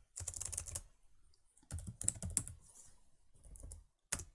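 Computer keyboard being typed on in quick runs of keystrokes: one run at the start, another about two seconds in, and a few last keys near the end.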